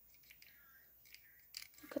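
Faint, scattered clicks of an action figure's plastic joints and body as it is handled and reposed, with a spoken word at the very end.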